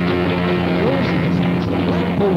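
Lo-fi experimental psychedelic rock from a 1992 four-track recording: steady held tones under a few notes that slide and bend in pitch about a second in.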